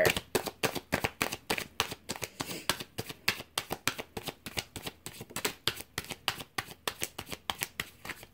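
A deck of tarot cards being shuffled by hand: a steady run of quick card flicks, about six a second.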